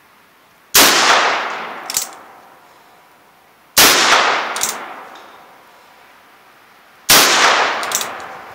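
Colt Single Action Army revolver in .45 Colt loaded with black powder, fired three times about three seconds apart. Each shot has a ringing tail that dies away over a second or two, and a smaller sharp click follows about a second after each.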